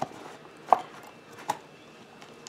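Three short sharp clicks or taps, about three-quarters of a second apart, from packaging being handled as a small makeup kit bag is worked open.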